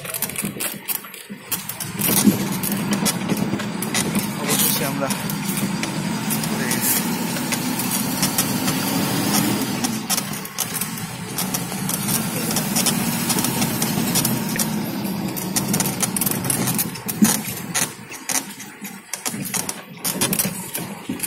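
A vehicle's engine running under load as it drives along a rough, rutted dirt track. Its hum holds steady, rises and falls in pitch around the middle, and drops away near the end. Frequent short knocks and rattles come from the body jolting over the ruts.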